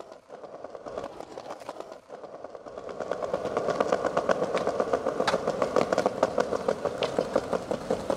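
Skateboard wheels rolling over stone paving: a steady rumble with rapid clicks as the wheels cross the joints between the slabs. It gets louder from about three seconds in.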